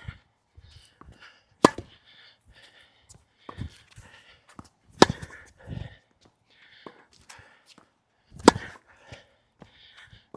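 Tennis rally: a racquet strung with Tourna Big Hitter Silver 7 Tour, a seven-sided polyester string, strikes the ball sharply three times, about three and a half seconds apart. Fainter hits, ball bounces and court footsteps come in between.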